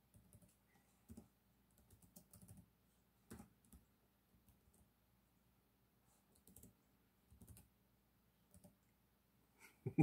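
Faint, irregular typing on a computer keyboard: scattered keystroke clicks with short pauses between.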